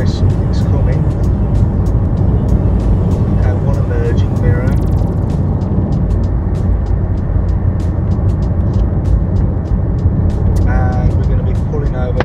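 Steady low rumble of engine and tyre noise inside a car's cabin as the car drives along at road speed.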